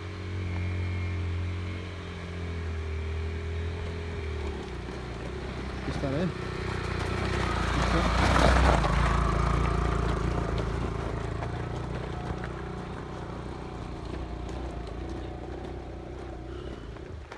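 Yamaha motorcycle engine running at low speed over rough ground. It grows louder as the bike approaches, passes close about eight seconds in, then fades.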